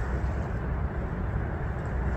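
Wind buffeting the microphone: a steady low rumble with a haze of noise above it.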